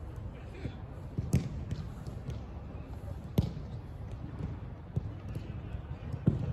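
A football being struck on an artificial-turf pitch: two sharp thuds, about a second and a half and three and a half seconds in, with fainter knocks between, over a steady low rumble.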